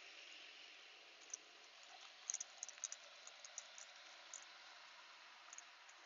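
Quiet steady outdoor hiss, with a flurry of small light clicks and crinkles about two to three seconds in and a few more scattered after, from small plastic craft jewels being handled in a small plastic bag.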